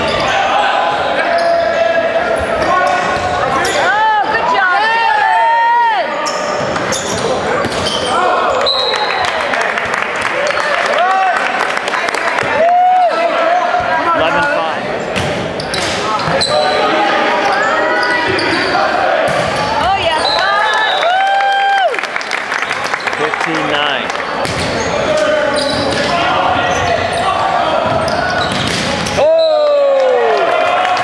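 Indoor volleyball being played in a gymnasium: sharp smacks of the ball being passed, set and hit, sneakers squeaking in short bursts on the hardwood floor, and players and spectators calling out, all echoing in the hall.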